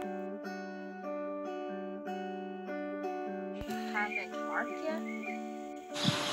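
Background music: an acoustic guitar plucking a slow melody of held notes that change about every half second. A faint voice sounds low in the mix in the second half.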